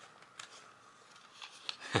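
A plastic CD jewel case being handled and opened, making a few faint clicks and taps.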